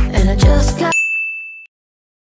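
Dance music with a steady kick-drum beat cuts off about a second in, followed by a single bright electronic ding that rings for under a second and stops.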